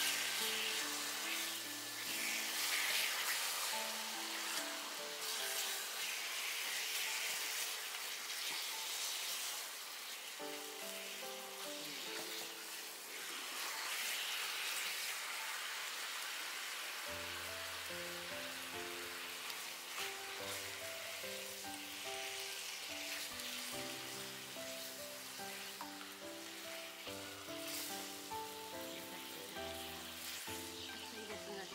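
Beef sizzling and spitting in a shallow sukiyaki pan greased with beef fat, a steady frying hiss. Background music plays under it, with a bass line joining a little over halfway through.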